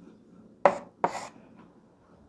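Chalk on a blackboard: two short, quick strokes about half a second apart, as a '1' and a fraction bar are written.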